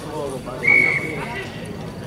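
Referee's whistle: one steady high blast lasting about a second, over faint talk from people close by.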